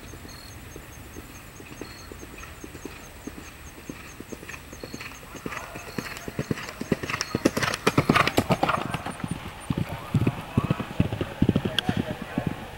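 A horse's hoofbeats cantering on a dirt track, faint at first and growing louder as it approaches, loudest about two-thirds of the way through as it passes close by.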